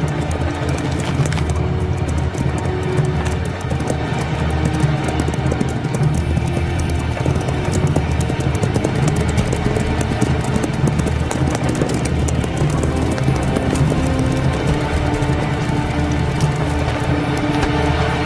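Cartoon background music of sustained low notes, with the rapid clip-clop of several horses' hooves running through it.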